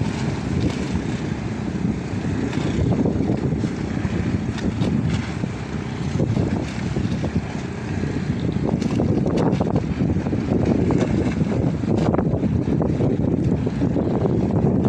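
Wind buffeting the microphone in a steady low rumble over the sea, with a small motorboat running past offshore beneath it.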